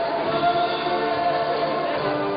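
Several voices singing together, holding long notes.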